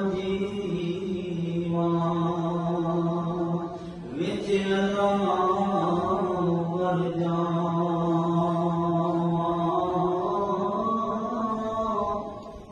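Men's voices chanting 'Allah' together in long held tones, as in Sufi dhikr. Each note is held for several seconds, with one break and a new phrase about four seconds in.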